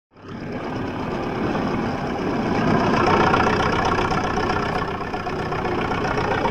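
A crawler bulldozer's engine runs steadily. It fades in at the very start and is a little louder around three seconds in.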